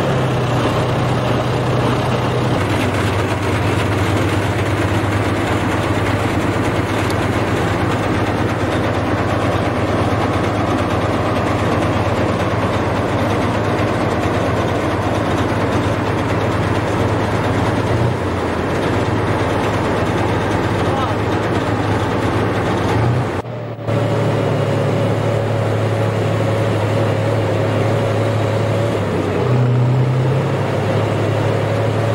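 Tank's diesel engine running steadily, heard from on the tank. The sound breaks off for a moment about three-quarters through, and a steady whine runs alongside the engine after that.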